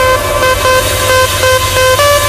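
Electronic dance music with a buzzy, horn-like synth lead stepping back and forth between two notes over a low bass.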